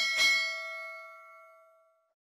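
A bell-chime notification sound effect, struck once as the bell icon is clicked. It opens with a click and rings out as a bright ding that fades away over about two seconds.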